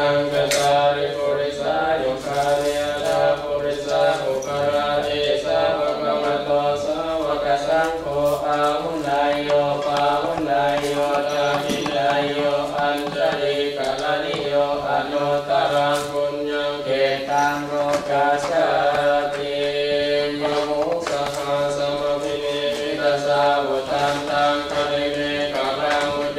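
Buddhist monks chanting Pali verses in a steady, continuous monotone.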